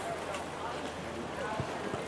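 Steady open-air poolside ambience with faint, distant voices and no distinct event.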